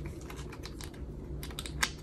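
Light clicks and plastic rustles of hands handling a clear holographic vinyl cash envelope, with one sharper click near the end.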